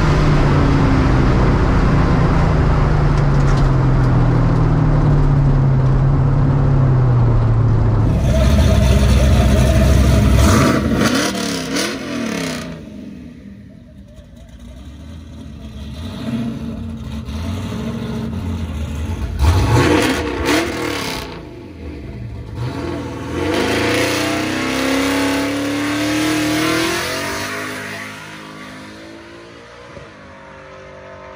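Drag car's engine heard from inside the cabin, loud and falling steadily in pitch as the car slows after a pass. Then, from about 8 seconds in, the sound of the strip from outside: vehicles running, with an engine rising in pitch near the end.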